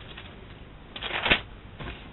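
Bible pages being turned: a short papery rustle about a second in, with a smaller one near the end.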